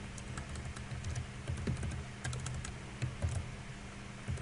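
Computer keyboard keys tapped in a quick, irregular series as text is typed and deleted, over a low steady hum.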